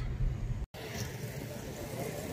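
Low road rumble inside a moving car's cabin, cut off abruptly less than a second in, followed by a quieter, steady outdoor hiss.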